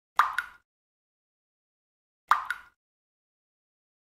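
Water-drop sound effect: two drips into water about two seconds apart, each a quick double plop with a short ringing tail.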